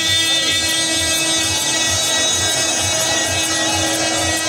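Amplified mourning chant from a procession's loudspeakers: one long held note over a steady deep beat about twice a second.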